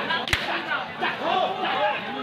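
A single sharp slap-like crack about a third of a second in, over continuous shouting voices.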